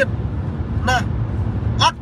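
Steady low rumble inside a car's cabin, with two short vocal sounds from a man about a second in and near the end.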